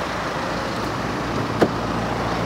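Steady noise of a car stopped alongside with its engine running, with one sharp click about one and a half seconds in as the car door's latch is pulled open.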